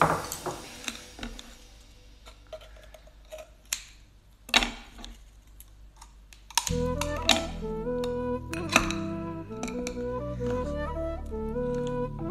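A few sharp clicks and snips of kitchen scissors cutting geoduck, with one louder crack a little before the middle. About halfway through, background music with a light woodwind-like melody comes in and carries on.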